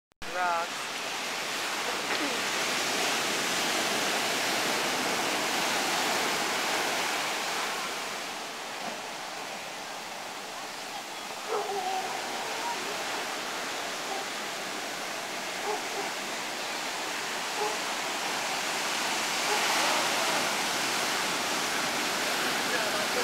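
Ocean surf breaking and washing up the sand, a continuous rush of water that swells and eases as the waves roll in, loudest in the first few seconds and again near the end.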